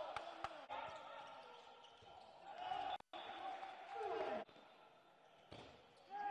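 A handball bouncing and smacking on the court of an indoor sports hall: several sharp hits in the first second, with voices echoing in the hall. The sound cuts out for an instant about three seconds in, then resumes more quietly.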